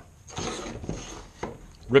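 A block of wood being shifted across a wooden bandsaw sled: a rough scraping rub with a few small clicks, lasting about a second.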